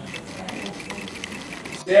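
Rapid small mechanical clicking, with a brief dropout just before the end.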